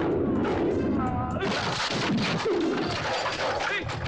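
Fight-scene soundtrack: men shouting and grunting over a run of sharp hit and thud effects.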